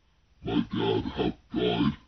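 A person's voice making short wordless vocal sounds, four in quick succession over about a second and a half.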